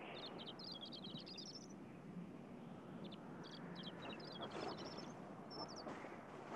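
Small bird chirping in quick runs of short, high notes, several runs climbing in pitch, over a faint steady outdoor hiss.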